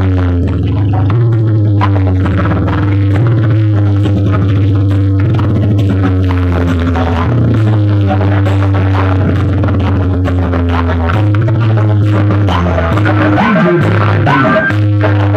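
Loud dance music played through large DJ speaker boxes, dominated by a heavy, droning bass line that shifts pitch every second or two, with a melody stepping above it.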